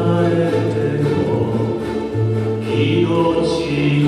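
A ukulele ensemble playing a slow ballad, with a steady low bass line under the chords and a man's singing voice over them.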